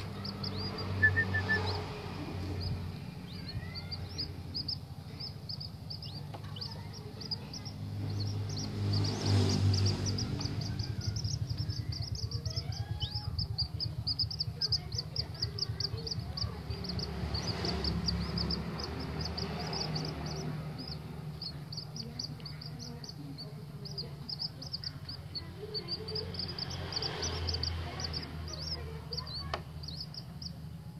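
Common moorhen chicks peeping: a quick, unbroken string of short high peeps, several a second, over a low steady hum.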